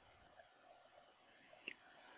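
Near silence: a faint background hiss, with one brief click near the end.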